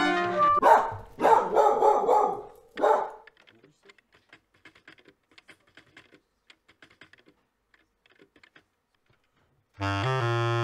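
The last of a brass intro jingle, then about two seconds of loud, broken animal-like vocal bursts, a stretch of faint scattered clicks, and a low bass clarinet note starting at the very end.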